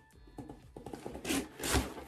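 Cardboard subscription box being opened by hand, its lid and flaps rubbing and scraping, louder near the end.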